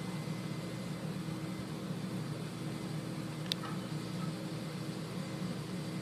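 Steady low mechanical hum of room background noise, with one short click about three and a half seconds in.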